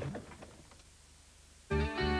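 A sung advertising jingle fades out, then a short near-silent gap, and about 1.7 s in instrumental music starts abruptly: held chords over a repeating bass note.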